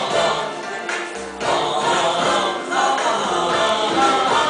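A recorded Vietnamese song played back: singing voices over a full backing track, continuous and loud.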